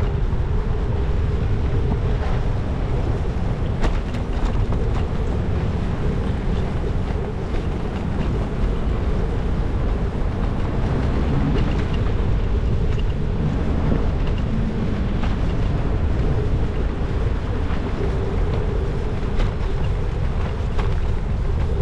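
Wind buffeting the microphone of a bicycle-mounted camera over a steady rumble of tyres on the road, with a few sharp knocks from bumps.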